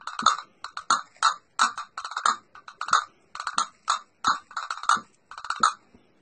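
Rhythmic percussive clicks from a small hand-held object struck in the hands, about three strokes a second, keeping the beat of the song between sung lines.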